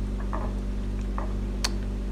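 A steady low electrical hum with a few faint taps, and one sharp click about one and a half seconds in, from strawberries being handled at a plate of melted chocolate.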